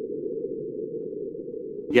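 Sonified recording from NASA InSight lander's SEIS seismometer of a small marsquake, sped up 60 times to bring it into hearing range: a low, steady rumble that cuts off near the end.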